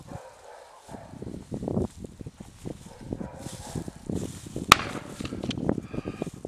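Footsteps crunching irregularly through dry grass and stubble, with a single sharp crack about three-quarters of the way through.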